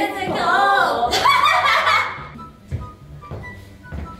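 A woman singing the song's melody with made-up lyrics for about two seconds, then it drops to faint background notes and a soft knock.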